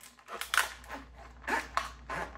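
Scissors snipping through a rigid plastic clamshell package: a few short crunchy cuts, the loudest about half a second in and another about a second later.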